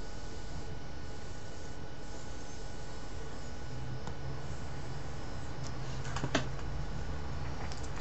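Quiet room tone: a steady low hiss and hum, with a few faint clicks about six seconds in.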